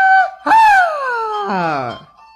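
A young man's loud falsetto whoop: a held high 'yeah', then a long high cry that slides steadily down in pitch, with a lower sliding tone joining in near the end.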